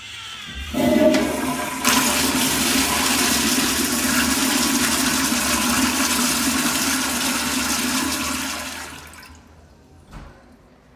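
1998 Kohler Wellcomme commercial toilet bowl flushing on a pressure-fed flush valve. A sudden rush of water starts about a second in and steps up again shortly after. It holds steady and loud for several seconds, then fades away near the end.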